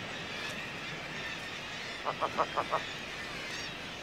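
Atlantic puffin calling: a quick run of about five short notes a couple of seconds in, over a steady background hiss.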